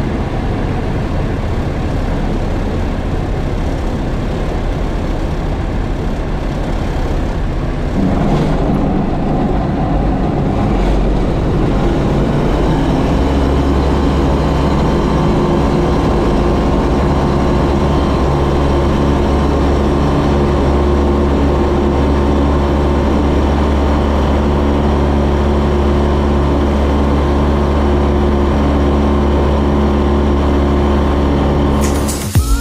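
Single-engine light aircraft's piston engine and propeller heard from inside the cockpit during the takeoff run. About eight seconds in the throttle comes up to takeoff power, and the sound turns louder into a steady, even-pitched drone that holds through the roll and the climb.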